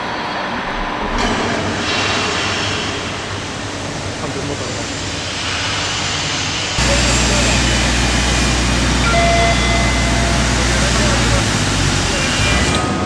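Car assembly plant floor noise: a steady wash of machinery noise that changes abruptly at each shot change, with a deep steady hum from about halfway that stops near the end.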